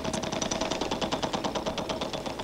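Game-show prize wheel spinning: its pointer clicks rapidly against the metal pegs around the rim, and the clicks gradually slow as the wheel winds down.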